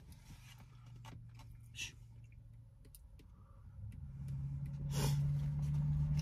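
Quiet eating sounds with a few faint clicks of forks on foam plates, then from about four seconds in a low, steady vehicle engine hum that grows louder.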